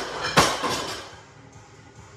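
A loaded barbell with bumper plates landing on wooden lifting blocks: one loud knock about half a second in that quickly dies away.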